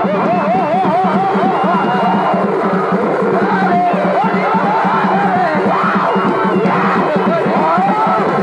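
Live Purulia Chhau dance accompaniment: a shehnai playing a fast, wavering, trilled melody over continuous drumming and a steady low drone. Crowd noise sits beneath the music.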